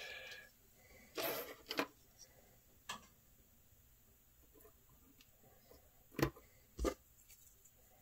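Quiet handling noises of small plastic model parts and a wooden stirrer strip being fitted by hand: a brief rustle about a second in, a few light clicks, and two sharper clicks near the end.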